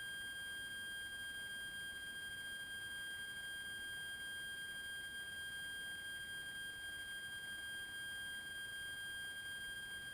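A faint, steady, high-pitched electronic tone with a second tone an octave above it, holding perfectly even without a break.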